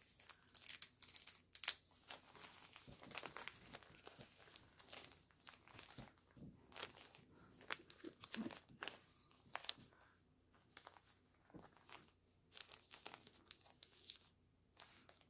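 Faint, irregular rustling and crinkling as hands handle and fit a terry-cloth bib around a silicone doll's neck, busier at first and sparser toward the end.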